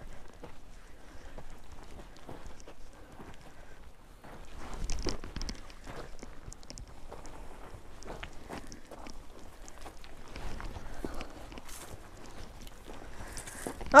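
Footsteps crunching and scuffing on loose, gravelly dirt as people walk across a steep slope, with a louder scuffle about five seconds in.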